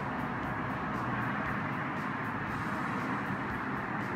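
A steady background hum, an even wash of noise with no separate events.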